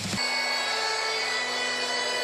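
Wrestling entrance theme opening on one long held, buzzy drone chord, steady and with no beat yet.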